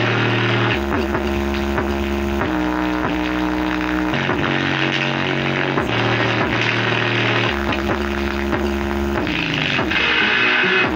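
Music with long, deep bass notes that step between pitches in a repeating pattern, played loud through a single bare 5-inch woofer driven at maximum power, its cone making large excursions.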